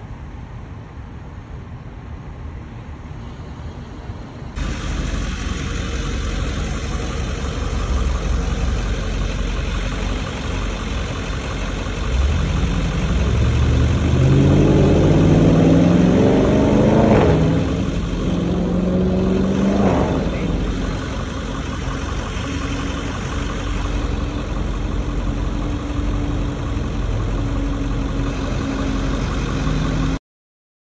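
Street traffic: a motor vehicle engine rises in pitch as it speeds up around the middle, with steady road noise and engine hum throughout.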